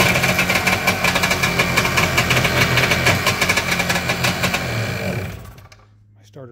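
Kawasaki two-stroke stand-up jet ski engine running just after being started on the electric starter, then stopping about five seconds in. It fires right up on a fresh high-cranking-amp battery.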